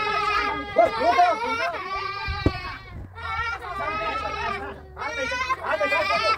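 A person's raised voice speaking in long, strained phrases, with a sharp knock about two and a half seconds in.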